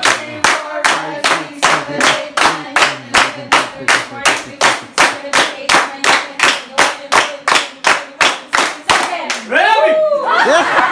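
A group clapping hands in unison to a counted routine, a steady beat of about three claps a second. A voice calls out near the end.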